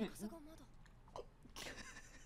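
Faint mouth sounds of drinking from a can: a sip and a swallow.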